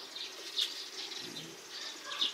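Faint bird calls in the background: a few short, quiet calls over light ambient noise.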